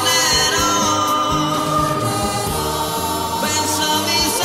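Italian pop ballad playing, with several voices singing the chorus together over the band.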